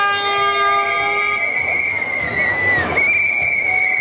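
A held horn note that stops about a second and a half in, overlapped by a long, shrill, single-pitched whistle blast. The whistle dips and breaks briefly near the end, then carries on.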